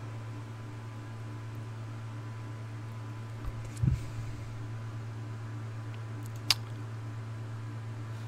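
Steady low hum of a quiet room with computer noise. A faint low thump comes just before four seconds in, and a single sharp click, a mouse click, comes about six and a half seconds in.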